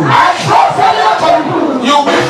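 A man's voice shouting loudly through a microphone and PA, in wordless or unintelligible cries rather than clear speech, with crowd voices joining in.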